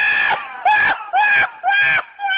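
Donkey braying: a long, high, held note that breaks off just after the start, then three short rising calls about half a second apart.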